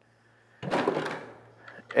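Plastic five-gallon pail lid being handled: a sudden scraping clatter just over half a second in that fades within about half a second.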